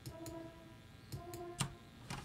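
Two short sampled French horn notes from Steinberg Iconica's horn patch, auditioned as MIDI notes are clicked into Cubase's key editor, with a few mouse clicks alongside.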